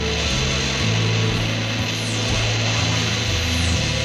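Lo-fi instrumental rock: a gritty, dense distorted electric guitar over a bass line that steps between held low notes.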